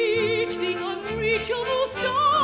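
Female operatic soprano singing a phrase of held notes with wide vibrato, over a low instrumental accompaniment.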